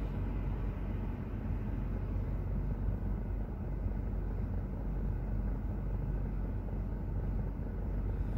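Steady low rumble and hum inside a car's cabin while it sits stationary in traffic: the engine idling with the air-conditioning fan running.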